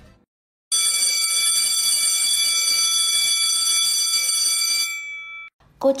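Electric school bell ringing steadily for about four seconds, then cutting off.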